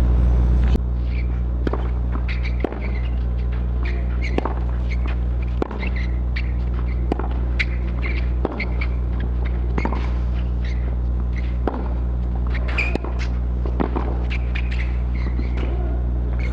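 Tennis ball knocks on a clay court, some from racket strikes and some from the ball bouncing, at irregular gaps of about a second. A steady low hum runs underneath.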